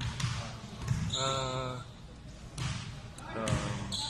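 Basketballs being dribbled on a gym court: a string of irregular dull thuds, with a voice heard briefly in the middle.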